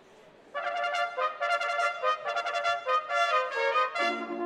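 Brass band starting to play about half a second in, the cornets carrying a melody of short, changing notes.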